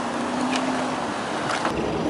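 City traffic noise, with a low rumble that comes up near the end, the kind of engine and road noise heard inside a moving taxi.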